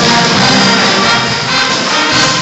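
Jazz band playing, with brass instruments.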